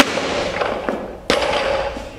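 Barbell with Eleiko rubber bumper plates in an Olympic clean. A sharp impact comes as the lift is caught in the squat, and about a second later a loud bang as the bar is dropped onto the floor.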